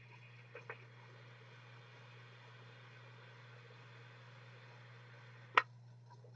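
A long, quiet draw on a Big Dripper RDTA dripping atomizer: a faint, even hiss of air pulled through the atomizer over a low steady hum. A single sharp click comes about five and a half seconds in.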